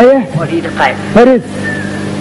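A singer's voice with two drawn-out 'haa' calls about a second apart, each rising and then falling in pitch, over a steady low hum.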